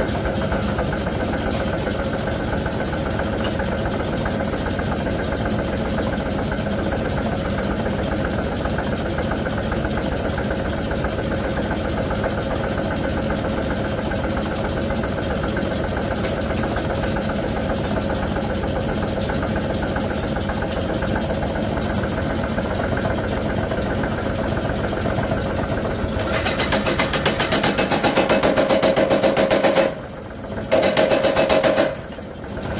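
A blacksmith's self-contained pneumatic power hammer running at idle with a steady mechanical chugging. About four seconds before the end it grows louder and harsher.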